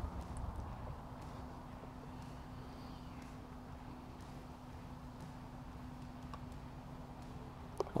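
Quiet outdoor background with a faint steady hum, then a single soft click near the end as a putter strikes a golf ball.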